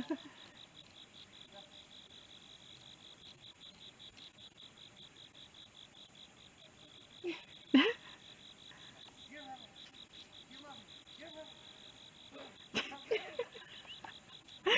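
Insects chirping in a high, rapid, even pulse without a break. About eight seconds in there is one short, loud, pitched call, and fainter brief calls follow near the end.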